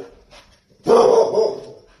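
Pit bull-type dog giving one loud bark about a second in, an alarmed reaction to a person wearing a pug mask.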